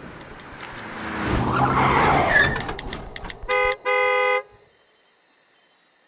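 A car approaches and goes by with rising engine and tyre noise that peaks about two seconds in, then its horn sounds twice, a short beep and a longer blast. After that only faint crickets remain.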